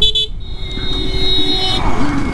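A vehicle horn, most likely the motorcycle's own, sounds twice: a quick beep at the start, then a steadier honk of about a second and a half. Wind and road rumble run underneath.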